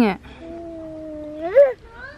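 A toddler's voice: one long, even vocal note that rises in pitch and gets louder near the end, like a wordless squeal.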